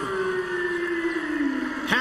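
A single drawn-out voice held on one long note that slowly falls in pitch, over steady arena crowd noise. A sharp knock comes just before the end.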